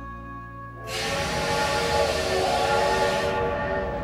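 Steam locomotive releasing steam: a loud hiss starts about a second in, with a steady whistle-like chord under it, and the hiss thins near the end. Soft music is heard before it.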